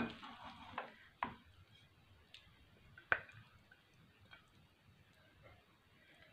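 Wooden spoon scooping cooked rice pilaf out of a non-stick pan onto a porcelain plate: soft scraping with a few short knocks of spoon on pan and plate, the clearest about a second in and about three seconds in.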